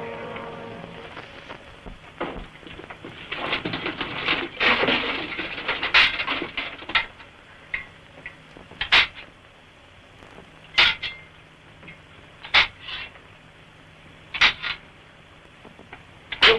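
Metal weapons striking shields and armour in mock gladiator combat: a burst of clattering, then single sharp clanks every couple of seconds, some in quick pairs.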